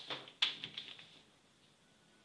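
Paper rustling as a cloth tape measure is drawn across pattern paper, then a sharp tap about half a second in, followed by a few lighter clicks, as a plastic ruler is set down on the paper.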